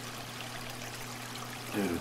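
Aquarium water trickling and splashing steadily, with a low steady hum underneath.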